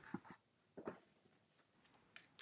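Near silence, with a few faint, brief scratching sounds in the first second from a paintbrush handle worked against the acrylic-painted canvas.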